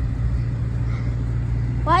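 Parked ice cream truck running, a steady low hum with its jingle not playing.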